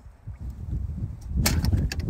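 Low handling rumble on the phone's microphone as the phone is moved about, loudest in the second half, with a sharp click about one and a half seconds in and a few lighter ticks after it.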